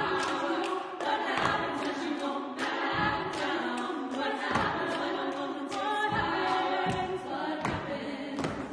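Women's vocal ensemble singing a cappella in close treble harmony, punctuated every second or so by sharp percussive hits from the singers' hands.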